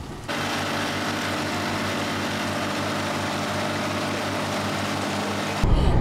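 Small boat's outboard motor running at a steady speed, an even hum with a fast regular pulse, which cuts off suddenly near the end.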